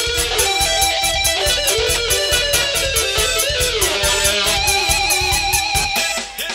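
Instrumental dangdut played by a live band: a lead melody with wavering, sliding notes over a fast, steady beat, with no singing.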